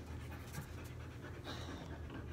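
A dog panting over a steady low hum, with a stronger breath about one and a half seconds in.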